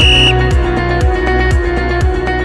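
Electronic background music with a steady beat, with a short high electronic beep at the very start, marking the end of an exercise interval as the workout timer reaches zero.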